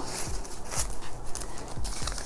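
Paper banknotes rustling as a stack is slid into a clear plastic pouch in a ring binder and the pouches are handled, with a few soft knocks.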